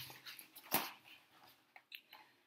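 A hardcover picture book being handled and its pages moved: a soft paper rustle with one sharp tap about three-quarters of a second in.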